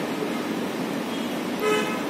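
A short vehicle horn toot near the end, over steady background noise.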